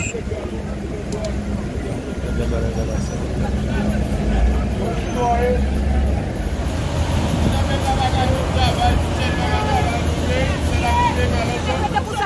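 Steady low rumble of vehicle engines running, with scattered distant voices.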